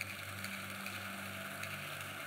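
Steady low hum with an even hiss: the room tone of a large auditorium picked up through the sound system. A faint, slightly higher tone comes in about half a second in and fades near the end.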